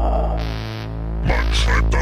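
Electronic megamix intro: a deep, steady synthesizer drone with sustained stacked tones, a brief burst of hiss about half a second in, and a processed spoken voice starting near the end.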